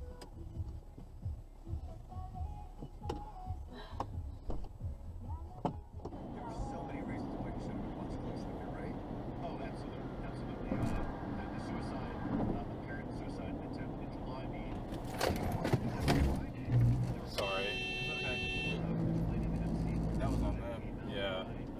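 Steady road and tyre noise inside a car on a highway, beginning about six seconds in. A few sharp knocks come about three quarters of the way through, then a car horn sounds for about a second and a half near the end.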